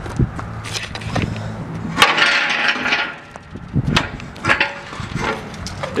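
Footsteps crunching and clicking on gravel, with a sharp crack about two seconds in followed by about a second of gritty crunching, over a faint low steady hum.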